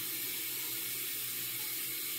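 Bathroom sink faucet running steadily, water pouring into the basin as she rinses the scrub off her face.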